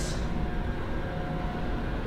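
CT scanner gantry rotating, a steady mechanical whir with a faint constant tone.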